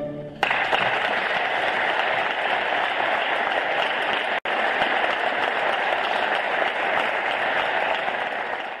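The last chord of a plucked-string orchestra dies away, then audience applause breaks out about half a second in and carries on steadily. It cuts out for an instant midway through.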